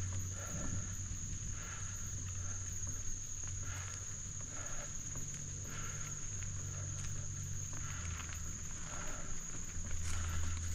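Steady high-pitched insect drone over a low, steady rumble, with soft irregular rustling about once a second.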